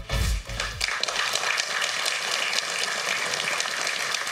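Walk-on music with a heavy bass beat that cuts out about a second in, followed by steady audience applause.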